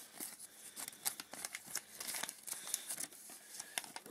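Folding paper instruction booklet being handled, rustling and crinkling in a dense run of short, crisp crackles.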